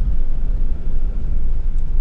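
Camper van driving along a narrow road, a steady low rumble of engine and road noise.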